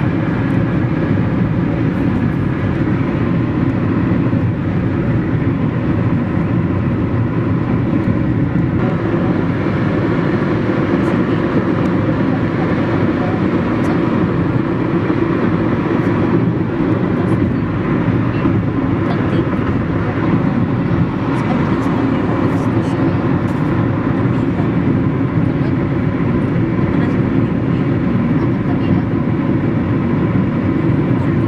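Steady car road and engine noise heard from inside the cabin while driving at highway speed, a low even drone.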